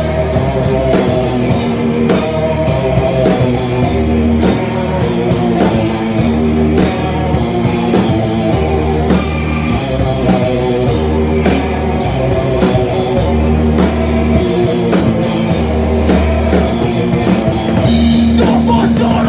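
Live hardcore band playing: distorted electric guitar and bass over a steady drum-kit beat with loud cymbal hits, picked up close to the drums.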